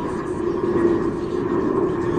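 Steady mechanical drone with a low hum and fainter, higher steady tones, unchanging throughout.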